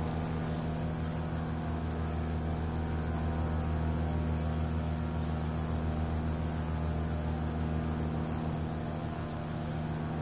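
Outdoor insect chorus of crickets: a steady high-pitched trill with a second insect chirping in a regular rhythm about three times a second. A steady low hum runs underneath.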